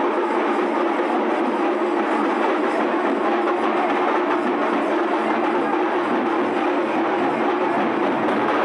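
Loud, steady Indian procession band music with drums and percussion.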